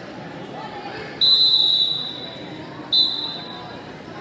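Referee's whistle blown twice to stop the wrestling action: a long shrill blast of about a second, then a shorter one. A murmur of gym crowd sits underneath.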